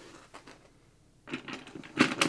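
Screwdriver turning a screw into the monitor's metal stand bracket: a quick run of small metallic clicks and ticks that starts just over a second in.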